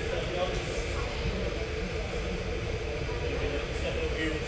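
A steady low rumble of room noise, with faint, indistinct voices over it.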